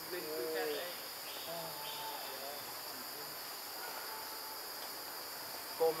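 Steady, high-pitched drone of forest insects. A few faint, short voice-like calls come in the first two seconds.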